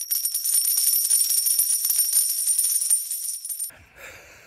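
Short intro sting: a fast, dense rattling like a shaker or jingle bells under steady high-pitched ringing tones, cutting off abruptly near the end.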